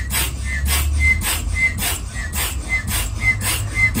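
Small hand-pressed bellows air pump inflating a vinyl hopping ball, pumped at a steady two to three strokes a second. Each stroke is a rush of air with a short whistle.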